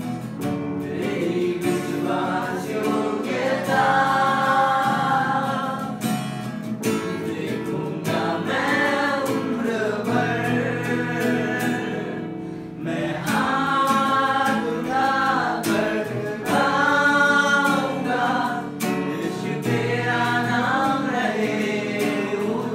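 Live Hindi worship song: singing to strummed acoustic guitar with keyboard accompaniment, sung in phrases with a short break about halfway through.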